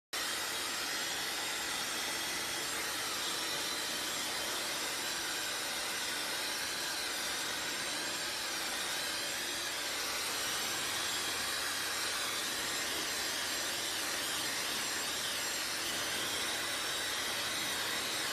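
Handheld hair dryer blowing steadily on one setting, a continuous airy rush with a faint high whine.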